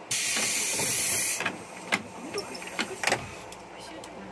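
A sudden burst of compressed-air hiss from the 117 series electric train's pneumatic system, about a second and a half long, followed by a few sharp knocks and clunks.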